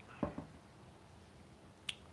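Small sounds of a man drinking coffee from a mug: a soft double thump about a quarter second in, then a single sharp click near the end.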